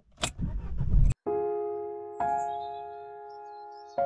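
A car key turns in the ignition with a click and the engine cranks and starts, building over about a second before cutting off abruptly. Then gentle piano-like music with sustained chords, changing chord about a second later.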